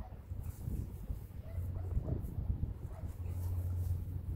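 A horse rolling on its back in dry dirt, with low animal groans, the longer one near the end.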